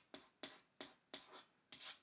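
Chalk writing on an easel chalkboard: a faint run of about five short strokes, roughly three a second, as a word is written out.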